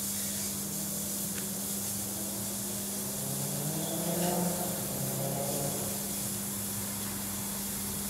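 Steady hiss from overcharged D-cell batteries venting as they heat, over a steady low mains hum. About halfway through, a faint wavering whistle rises and falls.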